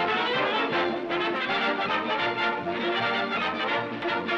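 Cartoon title theme music played by a dance orchestra with brass in the lead, from a 1932 film soundtrack.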